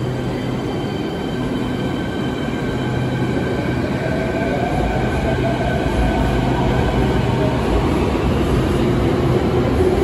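Beijing Subway Line 5 electric train pulling out of the station behind the platform screen doors. The rumble of the cars is overlaid by a motor whine of several tones, one of which climbs in pitch about four seconds in as the train gathers speed. The sound grows louder in the second half.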